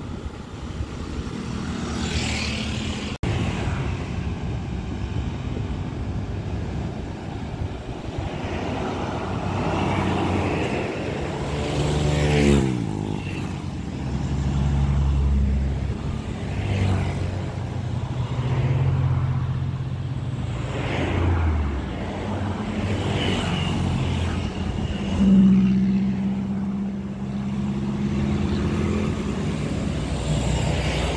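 Road traffic: motor scooters and cars passing along a two-lane road, their engines swelling and fading as each goes by. About twelve seconds in, one vehicle passes close and its engine note drops as it goes past. Another loud pass comes about 25 seconds in.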